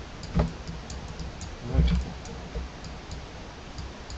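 Light computer mouse clicks scattered through, with two louder short knocks, about half a second and two seconds in.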